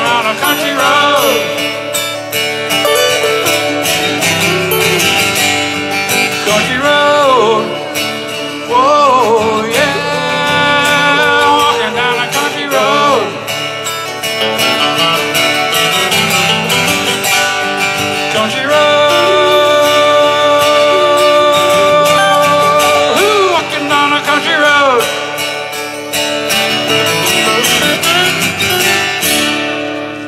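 Two acoustic guitars played live, strummed and picked, with a voice singing over them. The song ends just before the close.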